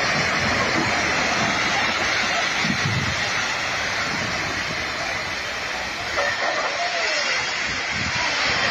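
A landslide: earth and rock sliding and pouring down a steep hillside in a continuous, steady rushing rumble.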